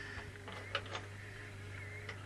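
Faint clicks and light rattles of small parts being handled among metal storage drawers, over a steady low hum.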